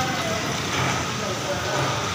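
Indistinct background voices over a steady noisy hum, with no single sound standing out.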